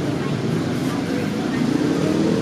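Busy street ambience: a steady mix of passing traffic and the unclear chatter of people nearby.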